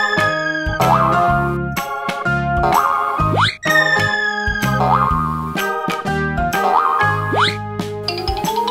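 Upbeat children's cartoon music with boing sound effects, about four wobbling boings roughly every two seconds. The boings match cartoon tyres bouncing, and two quick rising whistle-like glides fall between them.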